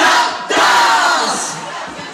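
Concert crowd shouting and cheering together, loudest in two surges in the first half second, then fading away.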